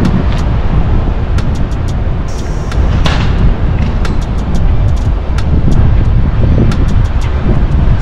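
Loud, steady low rumble of wind buffeting the microphone, with scattered faint ticks and a brief swell about three seconds in.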